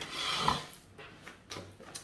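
Tarot cards being shuffled by hand, a papery rustle that is loudest in the first half-second, then fades to faint, with a few soft clicks near the end.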